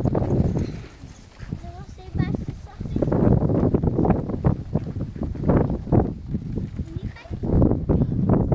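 Footsteps on dry, stony dirt ground, a quick irregular run of steps from about three seconds in, with low rumble on the microphone.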